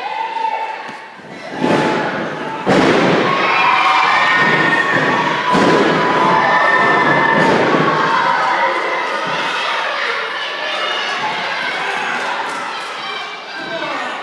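Several loud thuds of wrestlers' bodies hitting the wrestling ring, the biggest about three seconds in, with the crowd shouting and cheering over them for most of the stretch.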